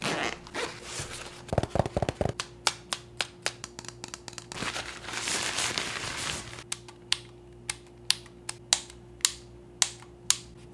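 Unboxing handling noises from a camera lens's packaging: a short rapid rasp as the soft lens pouch is opened, then white tissue wrapping crinkling as it is pulled off the lens. Near the end come a series of sharp clicks and taps as the bare lens is handled.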